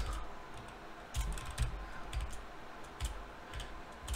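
Typing on a computer keyboard: a run of irregularly spaced keystrokes.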